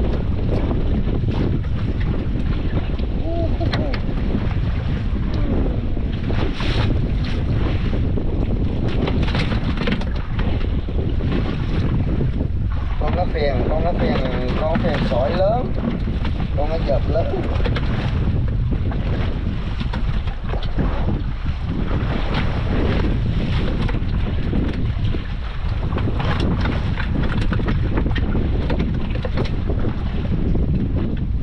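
Steady wind buffeting the microphone, with sea water washing around a small fishing boat.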